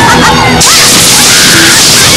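A whooshing special-effects sound laid over background music with held low tones.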